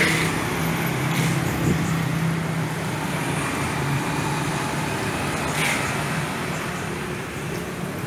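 Street traffic: a steady drone of motor scooter and car engines passing on a road.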